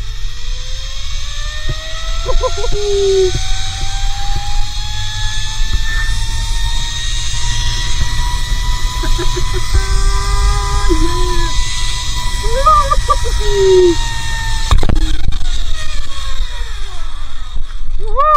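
Zipline trolley pulleys running along the steel cable: a whine that rises in pitch as the rider picks up speed, holds steady, then drops after a clunk near the end as the trolley slows into the platform. Low wind rumble throughout.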